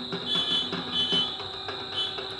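Two short high-pitched beeps over a steady high whine, with faint even ticking beneath.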